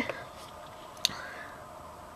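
Quiet room with a single sharp click about a second in, followed by a faint hiss.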